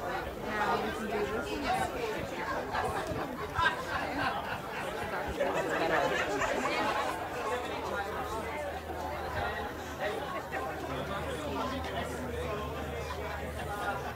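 Many people chatting at once, overlapping conversations of a waiting crowd. A steady low hum joins in about eight seconds in.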